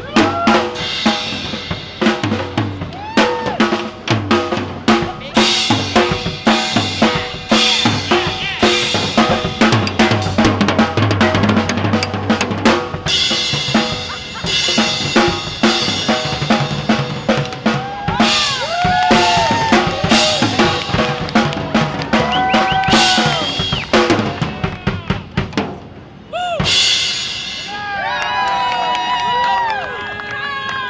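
A young child plays a fast, busy drum-kit solo on an acoustic kit: rapid bass drum, snare, tom and cymbal strokes with rolls. It ends with a final loud hit a few seconds before the end. The onlookers then whoop, cheer and clap.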